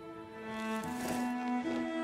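Film score of sustained bowed strings, cello-like, holding long notes that step up in pitch twice and grow louder.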